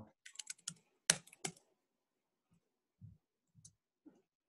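Computer keyboard keys clicking in a quick run over the first second and a half, the sharpest click about a second in, then a few faint scattered taps.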